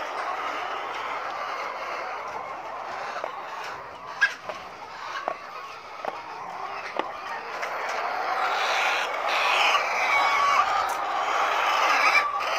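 A flock of caged young laying hens clucking, the calls growing louder and busier in the second half. A few sharp clicks stand out about four to seven seconds in.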